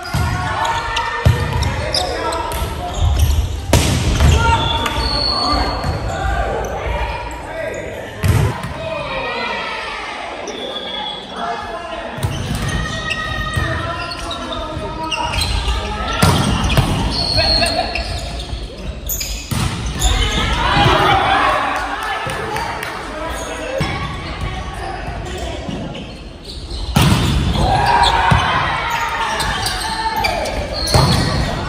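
Volleyball play in a gymnasium: several sharp smacks of the ball being struck and hitting the court, with players' voices calling out, all echoing in the large hall.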